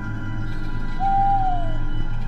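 Eerie horror-style background music of sustained drone tones; about a second in, a single hooting tone holds and then sags in pitch.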